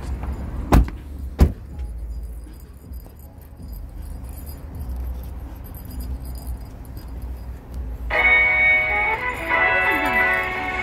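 Two sharp knocks of a car door, the second about two-thirds of a second after the first, followed by a low steady rumble of handling and outdoor noise; background music comes in near the end.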